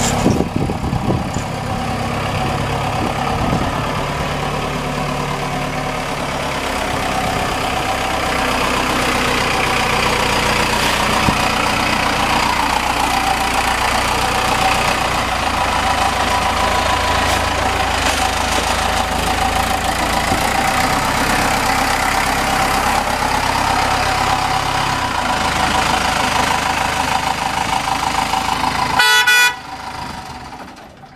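4BT Cummins turbocharged four-cylinder diesel in a 1952 Ford F5 truck running, a low steady engine sound with a whistle-like tone above it that dips and rises in pitch. The sound cuts off abruptly near the end.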